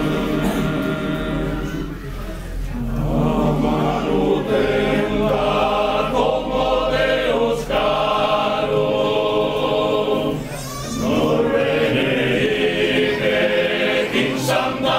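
Sardinian men's choir singing unaccompanied, in long held phrases with brief breaks about two, seven and a half and ten and a half seconds in.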